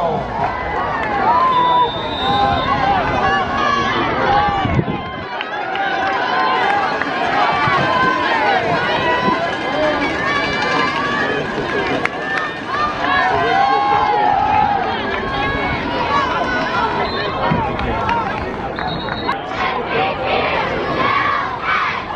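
Football stadium crowd: many spectators talking over one another in a steady babble of voices, with no announcement or cheer standing out.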